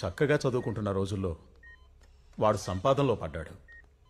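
A man's voice says a short phrase twice. Faint short two-tone electronic beeps fall in the pauses, about every two seconds.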